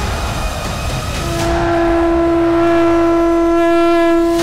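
A conch shell (shankha) blown in one long, steady note, starting about a second in, over a music soundtrack.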